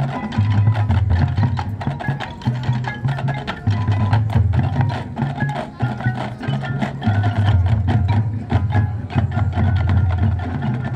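Marching band playing its field show: sustained low bass notes that shift from chord to chord under a rapid stream of sharp percussion clicks and hits, with mallet percussion from the front ensemble.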